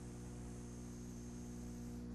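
Steady electrical mains hum with faint background hiss, unchanging throughout.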